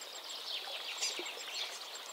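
Soft background nature ambience of small birds chirping: quick high chirps over a faint hiss, with one slightly louder chirp about a second in.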